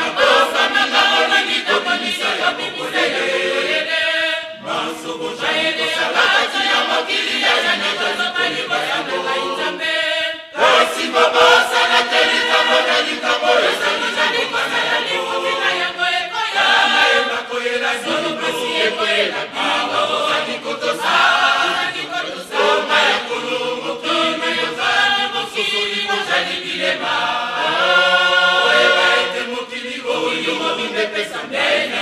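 Church choir singing a hymn unaccompanied, with many voices together. The singing breaks off briefly twice, about four and ten seconds in.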